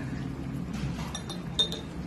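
A few light, ringing clinks of tableware, utensils knocking against dishes, starting about a second in, the loudest shortly before the end, over a low steady hum.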